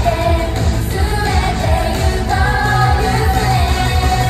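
J-pop idol song played live over stage loudspeakers: a girl group singing over a backing track with a steady, driving bass-drum beat.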